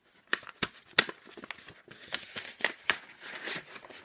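Red paper envelope being handled and opened by hand: paper rustling and crinkling, with several sharp clicks.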